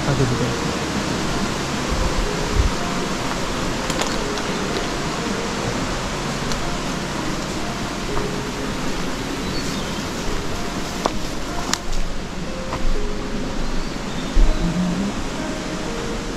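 Steady rushing of a nearby mountain stream, heard as an even hiss throughout, with a few scattered sharp clicks and knocks.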